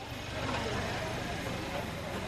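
Many people talking at once outdoors over a steady low rumble.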